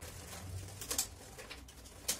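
Faint clicks of small plastic puzzle-cube pieces being fitted together by hand, the clearest about a second in, over a low steady hum.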